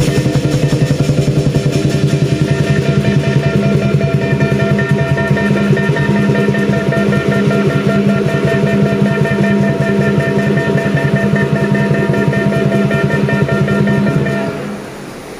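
Southern lion dance percussion: a large drum beaten in a fast, steady roll under crashing cymbals and a ringing gong.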